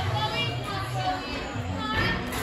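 Children's voices and chatter echoing in a large gym hall, with music playing in the background.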